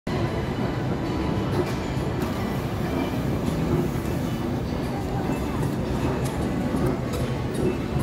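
Steady low rumble of an inclined moving walkway (travelator) running, with voices and faint music in the background.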